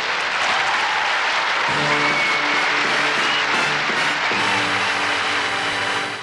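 A large banquet audience applauding, with a band starting up a tune under the applause about a second and a half in.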